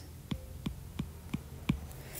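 Faint light ticks of a stylus tapping on a tablet screen while handwriting, about three a second, over a low steady hum.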